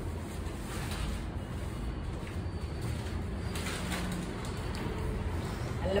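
Steady low background hum with faint, brief rustles of saree fabric being swung open and draped, and a voice starting right at the end.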